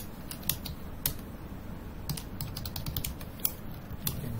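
Typing on a computer keyboard: a run of separate, irregularly spaced keystroke clicks, the first the sharpest.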